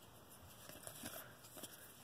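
Near silence, with faint handling sounds of trading cards being shifted and fanned in the hands, a little louder around the middle.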